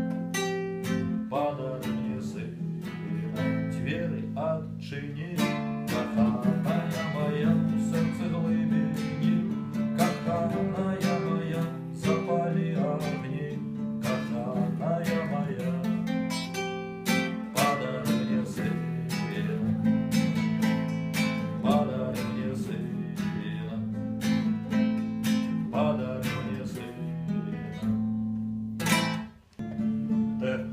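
Acoustic guitar strummed in steady chords, an instrumental passage with no voice. The playing drops out briefly near the end.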